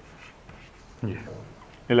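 Chalk writing on a chalkboard: soft scratching with small ticks of the chalk. About a second in, a short male vocal sound.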